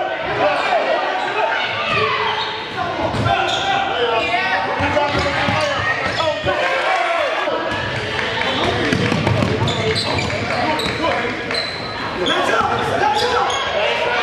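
Live basketball game sound in a gymnasium: a basketball bouncing on the hardwood floor amid crowd voices and shouting, with the echo of a large hall.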